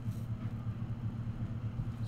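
Steady low background hum with no speech.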